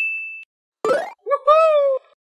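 A bright bell-like ding sound effect, one steady high tone with overtones, fading away within the first half second. About a second in comes a short rising sweep, then a high, cartoon-like voice exclamation near the end.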